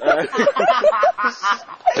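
A person laughing in a run of short, quick voiced bursts.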